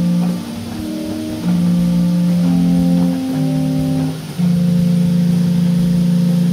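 A pipe organ, a 1906 Peter Conacher tracker instrument, sounding its 8-foot flauto traverso flute stop: a slow phrase of steady held notes, sometimes two together, ending on a long note held for about three seconds.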